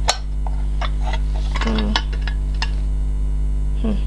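Light metal clicks and clinks as a hinged stovetop waffle iron is handled and opened, one sharper click at the start and a scatter of smaller ones after, over a steady low electrical hum.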